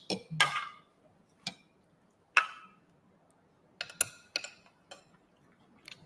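Metal cutlery clicking against a ceramic plate a few times as food is taken up, single sharp clinks with short pauses between, the loudest about halfway through with a brief ring.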